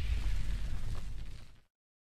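Fading tail of a cinematic boom sound effect accompanying a studio logo animation: a deep rumble with a little high hiss dying away, then cutting to silence about a second and a half in.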